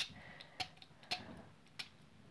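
Four faint clicks, about half a second apart, from a small plastic perfume bottle being twisted open in the hands.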